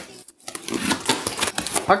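Cardboard box being opened: packing tape slit with a knife and the cardboard flaps handled, a quick run of crackly scratches and rustles.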